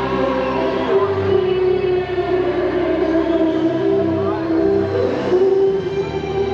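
Live rock band playing a slow instrumental, with long held lead notes that bend slightly in pitch over sustained chords.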